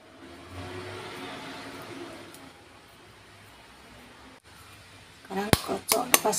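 Faint handling sounds of mashed potato being shaped by hand, then a single sharp knock about five and a half seconds in, followed by a woman's voice.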